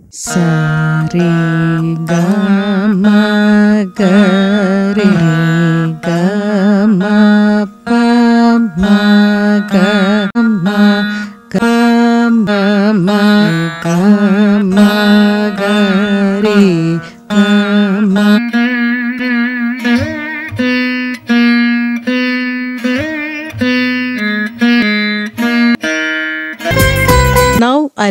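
Saraswati veena played in Carnatic style: plucked melody notes with wavering pitch slides (gamakas) over a steady drone, in phrases separated by short breaks. A brief loud burst of noise sounds near the end.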